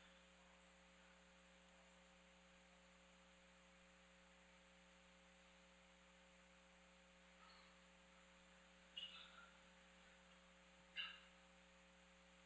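Near silence: a faint steady electrical hum, with two faint brief sounds near the end.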